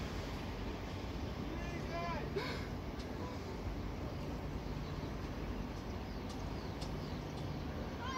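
Steady low outdoor rumble of distant city traffic and wind, with a short voice heard about two seconds in.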